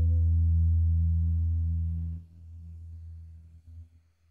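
Bass guitar holding one low final note that rings steadily, then drops away sharply about two seconds in, leaving a faint tail that fades out near the end.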